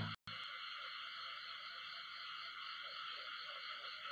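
Steady background hiss with no speech, briefly cut out just after the start.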